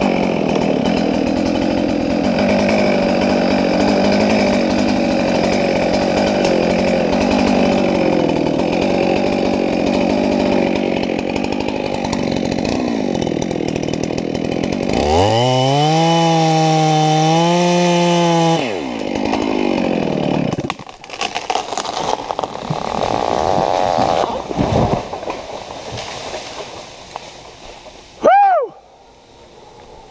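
Gas chainsaw running under load in a large felling cut, then revving high and steady for a few seconds past the halfway point before it drops and cuts out. Then comes a run of irregular cracks and crashes, with a short, loud, swooping whistle-like tone near the end.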